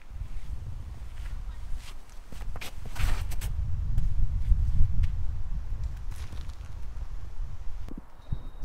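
Footsteps of a disc golf run-up and throw on a turf tee pad, with a cluster of quick scuffs about three seconds in. A low rumble on the microphone runs underneath and is heaviest just after the throw.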